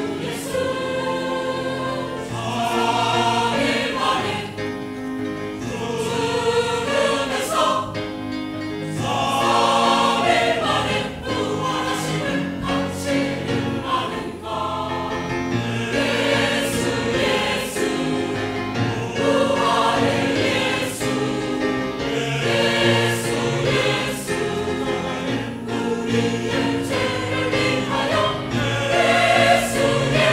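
A large mixed choir of men and women singing a church cantata in Korean, in full harmony, in phrases of a few seconds each.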